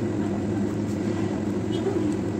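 A steady low mechanical hum, even in level throughout.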